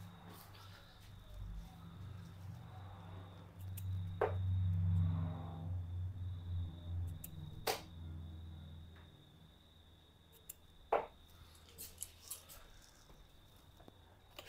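Three darts striking a Winmau Blade bristle dartboard one at a time, each a short sharp impact, about three and a half seconds apart. Underneath, a low hum swells a few seconds in and dies away before the last dart lands.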